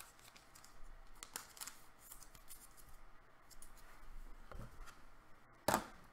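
Trading cards and clear plastic sleeves being handled: faint scattered rustles and scrapes, then a short, sharper snap just before the end.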